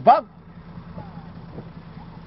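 A man's voice breaks off just after the start. Then comes a faint, steady low hum of outdoor background.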